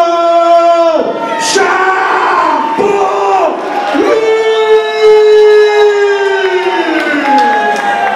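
A fight announcer's voice stretching out the winner's name in long drawn-out calls over a cheering crowd. The longest call is held for about three seconds and falls in pitch at its end.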